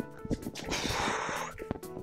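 A woman's heavy exhale of breath from exertion during burpees, lasting about a second in the middle, over background music.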